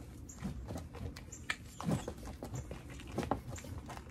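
Scuffs and rustles of a person moving fast, feet on leaf-strewn grass and clothing, as a rattan stick is drawn from the belt and swung, with a few short sharp sounds; the strongest comes about two seconds in.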